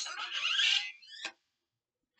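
Motorized faceplate of an Iron Man Mark V wearable helmet opening: a loud mechanical whirring with a rising whine that stops abruptly a little past a second in.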